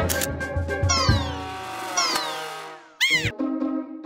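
Cartoon soundtrack of music with sound effects: two long falling whistles about a second apart, then, about three seconds in, a short high call that rises and falls in pitch.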